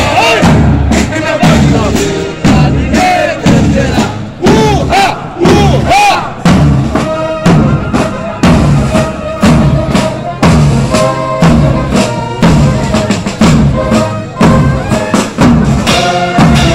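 Military drum corps of snare drums, bass drums and cymbals playing a steady marching beat, with voices calling out over it a few seconds in.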